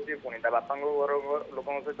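Speech only: a caller talking over a telephone line, the voice thin and narrow-band.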